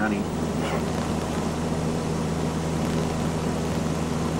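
Steady drone of a high-wing single-engine light plane's engine and propeller, heard from inside the cabin. The pilot says it is short of power and unable to climb.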